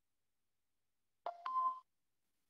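A short electronic two-note chime, a lower tone stepping up to a higher one, lasting about half a second near the end: the computer's notification sound as the virtual-event app joins a table.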